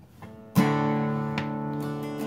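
Steel-string acoustic guitar in drop D tuning: one chord strummed about half a second in and left to ring, slowly fading.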